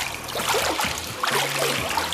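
Pool water splashing and sloshing around a person who twists the torso back and forth against the water's resistance in an aqua-aerobics exercise, over low background music.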